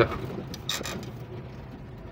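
Cab noise of a GAZ-53 truck driving slowly along a dirt field track: a steady low V8 engine hum with road noise, and a short rattle just under a second in.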